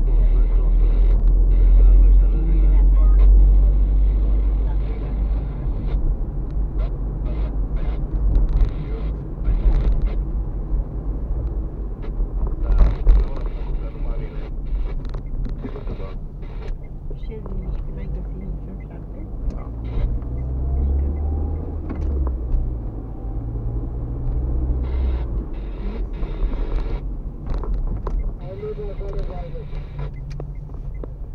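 A car driving, heard from inside the cabin: a steady low rumble of engine and tyres, with short knocks from the road surface scattered through. The engine note shifts about two-thirds of the way in.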